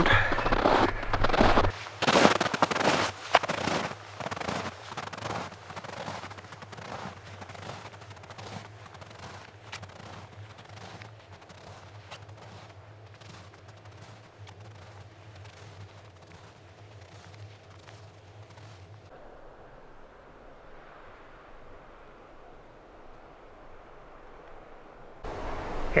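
Footsteps crunching in cold, powdery snow: a long run of crisp crunches that grow steadily fainter as the walker moves away. After about nineteen seconds they stop and only a faint hiss remains.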